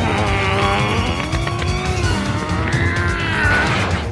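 Long, strained grunts from two anime fighters pushing against each other in a hand-to-hand grapple, their pitch sliding up and down, over a steady low rumble and background music.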